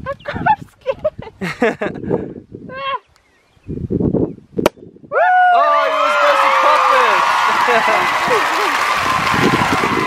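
A champagne cork pops a little over halfway through. Right after it, several people shriek and cheer loudly, their voices falling in pitch over a hiss.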